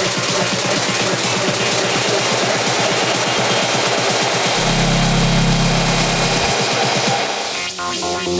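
Electronic dance music from a DJ set, built on a fast, dense beat. A low bass note is held for about two seconds in the middle, and the high end drops away near the end, just before the next section comes in.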